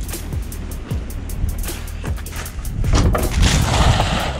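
Background music over short knocks and rustling as someone climbs onto a metal dumpster among plastic bags and cardboard boxes, with louder rustling near the end.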